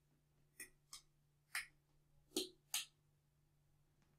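Small toggle switches on a servo-drive demo panel clicking as they are flipped, five sharp clicks spread over about two seconds.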